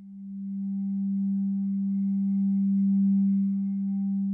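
A single low, steady drone tone, nearly pure, that swells up over about the first second and then holds at one pitch.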